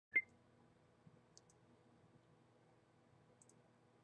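A single sharp click just after the start, then quiet room tone with a few faint ticks.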